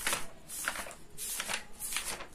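Paper pages of a textbook being flipped over by hand in quick succession, about four short papery swishes.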